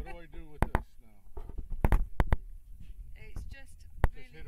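Indistinct talk from people nearby, with a few sharp knocks and bumps about half a second and two seconds in.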